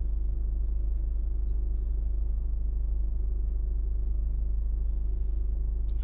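Steady low hum of a car engine idling, heard from inside the cabin.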